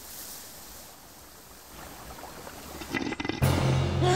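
Steady hiss of a garden hose spraying water. About three seconds in there is a short rattle, then a low held music note comes in.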